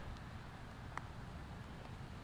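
A putter striking a golf ball on the green: one short, faint click about a second in, over faint outdoor background noise.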